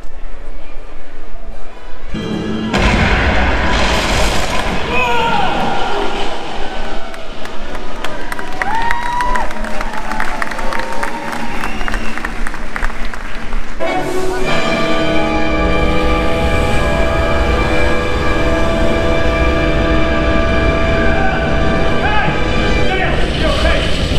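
Stunt-show soundtrack over the theatre's loudspeakers: voices over music for the first half, then sustained orchestral music from about fourteen seconds in.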